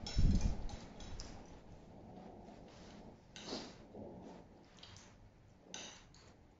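Table sounds of a meal: a dull knock on the table about a quarter-second in, then scattered light clicks and short scrapes of chopsticks and a spoon against plates.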